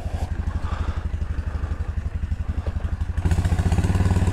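Kawasaki W650's air-cooled parallel-twin engine running under way through a newly fitted aftermarket muffler, a steady low exhaust beat. It gets louder about three seconds in.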